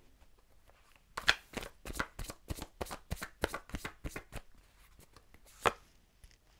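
A tarot deck being shuffled by hand: a run of quick, light card snaps, about five a second, for about three seconds, then a single louder card slap near the end.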